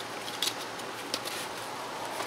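Faint handling noise: a few light clicks and rubbing as a foam-backed plastic engine cover is pressed down over the engine's hoses and wiring.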